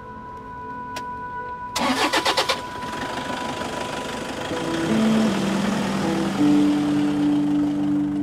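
A car engine cranked by its starter, a quick run of pulses lasting under a second, then catching and running steadily.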